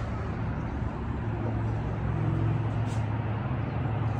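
Steady road traffic noise with a low hum that swells about halfway through.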